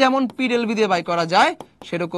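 Speech only: a man talking, a teacher's lecture voice.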